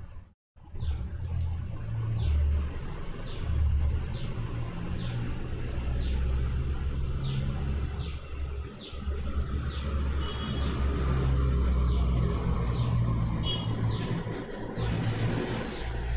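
A low, uneven rumble throughout, with a bird repeating a short, high, falling note about one and a half times a second.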